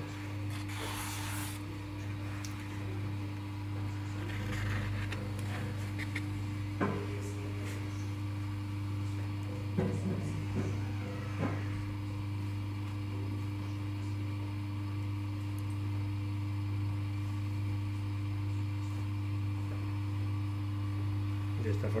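Potter's wheel motor humming steadily as the wheel spins, with a few brief wet scrapes and rubs of hands and a rib smoothing the clay join.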